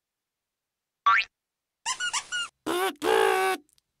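Cartoon spring "boing" sound effect, a quick rising glide about a second in, as a clown jack-in-the-box pops up out of its box; then short squeaky effects and a character laughing near the end.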